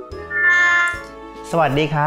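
A short held musical tone, a sound-effect sting over steady children's background music, that fades out within about a second and a half.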